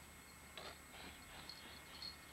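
Near silence: faint outdoor background hiss with two soft, brief noises about half a second and a second in.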